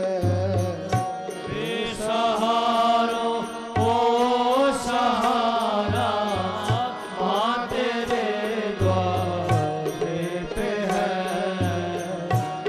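Hindu devotional aarti singing over music, in a melismatic chant-like style, with a low drum stroke every two to three seconds.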